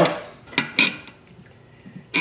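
Two quick metal clinks, a quarter second apart, a little over half a second in, from the steel barrel and upper receiver of an LWRCI SMG-45 being handled during disassembly.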